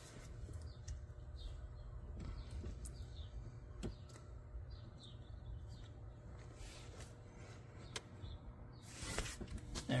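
Quiet hand work on a Shurflo 4048 water pump: a few faint clicks and plastic handling sounds as the pressure switch housing is held and fitted back onto the pump head, over a steady low hum.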